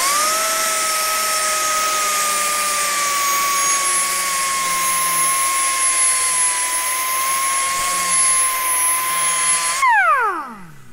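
3-inch Fuji FA30X air angle grinder with a double-sided tungsten-alloy milling disc, run on 90 PSI air, beveling the edge of a metal plate. A steady high whine with air hiss spins up at the start, sags a little in pitch under the cutting load, then falls away quickly near the end as the trigger is released.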